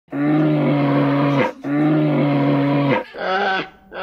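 Two long, deep, bear-like roars, each held steady for about a second and a half, then a shorter call whose pitch wavers near the end.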